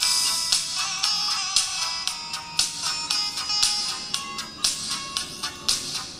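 Recorded music played back through a pair of stand-alone paper-cone tweeters under test. The sound is bright and thin, almost all treble with hardly any bass, with many sharply struck notes, and it grows quieter near the end.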